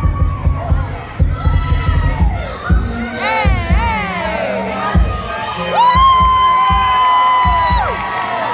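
Loud dance music with a heavy, regular bass beat, and an audience cheering and screaming over it. A long high note is held for about two seconds near the end.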